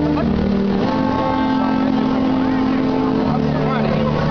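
Brass band playing a processional march in long held notes that step from one pitch to the next, with crowd voices beneath.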